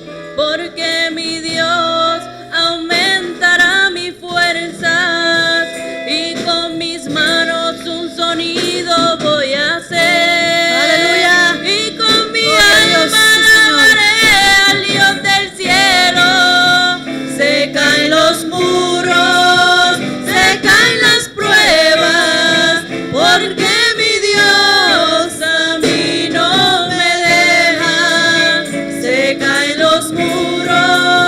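Two young women singing a Spanish worship chorus into microphones, over live instrumental accompaniment. The music grows fuller and louder about ten seconds in.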